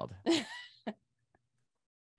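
A person's brief laugh, short voiced breaths in the first second.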